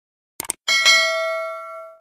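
Subscribe-button sound effect: two quick clicks, then a bright notification-bell ding that rings on and fades steadily.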